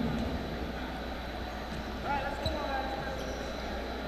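A basketball bouncing on a hardwood court in a large, mostly empty arena over steady hall noise. One thump stands out about two and a half seconds in, just after a faint, distant shout.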